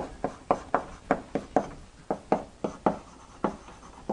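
Chalk writing on a blackboard: a quick, irregular run of short taps and scrapes, about four a second, as letters are written.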